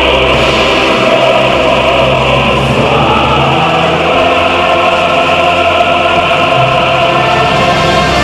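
A choir singing with orchestral accompaniment, holding long sustained notes over a steady bass line.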